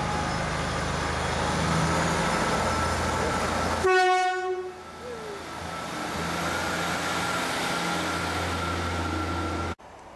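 Class 153 diesel railcar running as it comes through the station close by, with one short horn blast about four seconds in, the loudest moment. The sound cuts off suddenly near the end.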